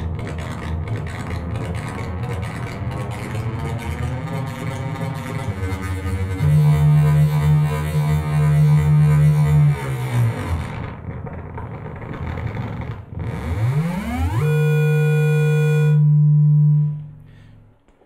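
Make Noise Echophon pitch-shifting echo in a Eurorack modular synthesizer, its delay feedback saturating into a crunchy, distorted drone. A gritty dense texture gives way to a loud steady tone; about ten seconds in the pitch falls away, then sweeps back up into a held tone that cuts off a second before the end.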